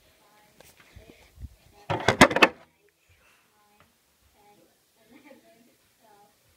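A brief clatter of several sharp knocks and bumps about two seconds in, with faint low voices before and after.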